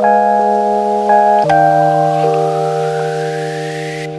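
Background music: soft, sustained keyboard chords that change every second or so, with a faint rising sweep over the second half.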